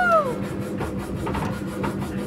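Inside a moving car's cabin, recorded on a phone: a steady low hum with road noise. A long drawn-out yell from the driver dies away at the very start.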